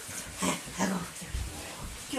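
Border collie giving two short, excited whines as it jumps up in greeting, followed by a dull low thump about a second and a half in.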